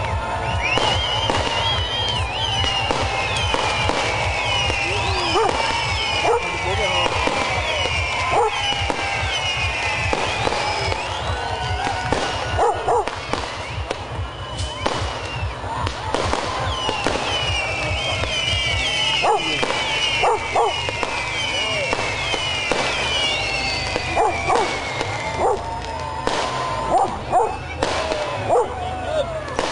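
Fireworks going off: scattered sharp bangs and crackling, with runs of falling whistles. A crowd shouts, whoops and cheers throughout, over a pulsing bass beat from music.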